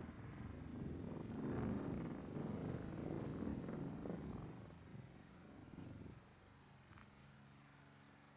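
A car driving slowly past close by: a low engine and tyre rumble that swells over the first few seconds and dies away about six seconds in, leaving a faint steady hum.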